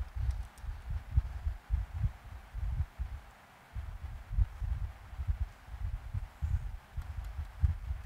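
Irregular low thumps and bumps of handling noise, picked up at the microphone while drawing with a stylus on a pen tablet, over a faint steady hiss; they ease off briefly a little past the middle.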